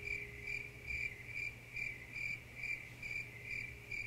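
Cricket chirping, an even high-pitched pulse about twice a second, edited in as the comic "crickets" sound effect for an awkward silence after an unanswered question. A faint steady hum sits underneath.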